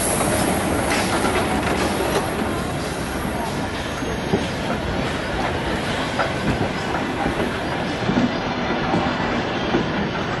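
Railway coaches and goods wagons rolling past close by: a steady rumble of steel wheels on rails, with irregular clicks and clatter from the wheels and running gear.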